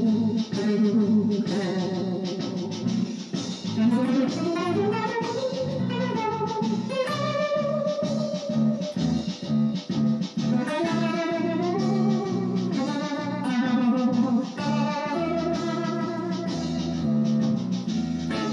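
Electric guitar playing a sustained melodic lead with sliding notes and vibrato, over a low bass line repeating in even steps.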